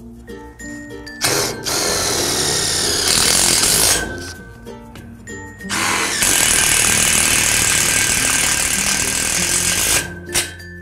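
Cordless Makita power driver running in two long bursts, driving screws through a downpipe strap into a steel carport post: the first for about three seconds starting about a second in, the second for about four seconds near the end. Background music underneath.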